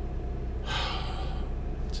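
A man's audible breath, a soft hiss lasting about a second, taken in a pause before he speaks again, over a steady low hum.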